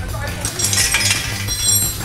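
A light metallic clink that rings briefly about one and a half seconds in, with a brief hiss just before it, over background music with a steady bass.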